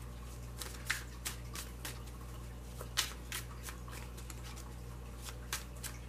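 Tarot cards being shuffled by hand: soft, irregular clicks and flicks of card edges, with sharper ones about a second in and at three seconds, over a faint steady low hum.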